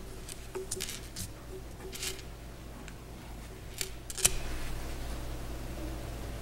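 Sheets of paper rustling and being handled in short spells, with a sharp click a little after four seconds in, over a steady low electrical hum.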